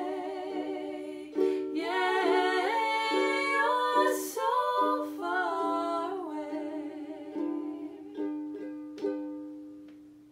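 Ukulele strummed in steady chords under a woman singing a line with vibrato, no words clear; the voice drops out after about six seconds, and a last strum about a second before the end rings out and fades.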